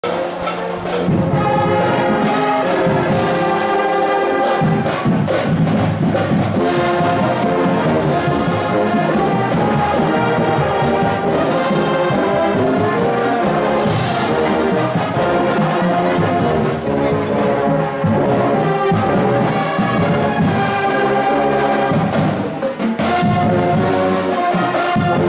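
A school marching band playing a tune, led by its brass with sousaphones sounding close by. Sharp percussion hits cut through a few times.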